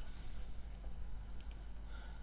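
Quiet room tone with a low steady hum and two faint, quick clicks close together about a second and a half in.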